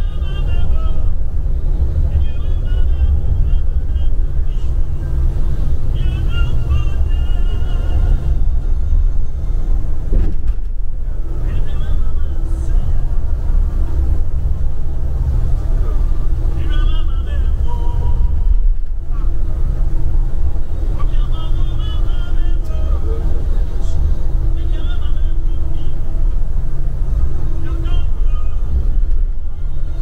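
Steady low rumble of a bus's engine and tyres, heard from inside the cabin while driving. Music with a singing voice plays over it, coming and going every few seconds.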